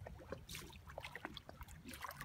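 Faint splashing and lapping of water as a large stingray's wingtip breaks the surface, with small irregular clicks and drips over a low rumble.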